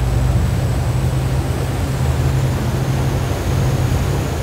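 The Viking 80 Convertible's twin MTU 16V M96 inboard diesels running hard at speed: a loud, steady deep rumble with a rush of water and wind over it.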